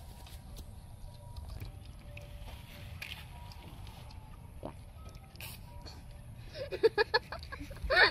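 Several girls burst out laughing near the end, after a few seconds of low rumble with faint clicks of eating.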